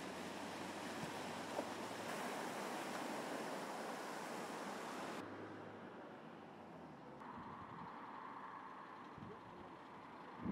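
Cars and vans driving through floodwater across a road, their tyres throwing up a steady rush of spray. About five seconds in it cuts to a quieter, duller outdoor background of wind and distant traffic.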